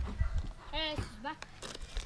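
A short wavering vocal call about a second in, like playful sing-song chanting, with low thumps on the microphone at the start.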